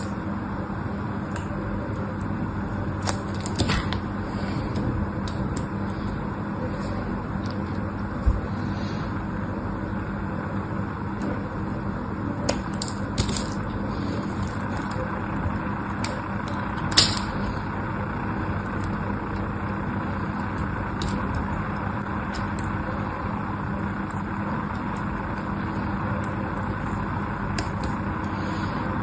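A utility knife blade shaving and cutting a bar of soap, with scattered crisp cracks and crunches as flakes break off, the loudest about seventeen seconds in, over a steady low background hum.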